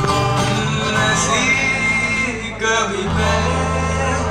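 Live band music: a male singer with acoustic guitar and electric bass accompaniment.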